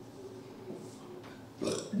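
Quiet room tone with faint marker strokes on a whiteboard, then, about a second and a half in, a short throaty vocal sound from a man just before his speech resumes.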